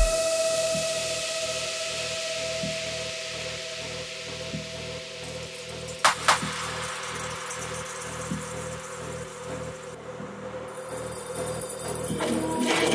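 Psytechno DJ mix in a breakdown: the kick drum drops out, leaving held synth tones and a hiss that slowly fades over a soft, even pulse. Two sharp clicks come about halfway, and the music starts to build back near the end.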